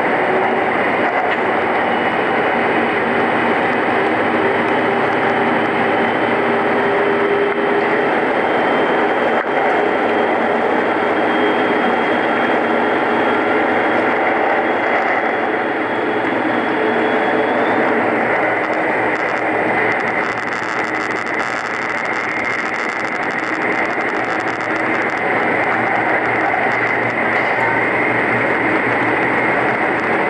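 Steady running noise of the Setsugekka diesel railcar heard from inside, with wheels on rail and the engine in a loud, continuous rumble, as if echoing in a tunnel. A thin high whine rides on it until a little past halfway, after which a hissier edge comes in.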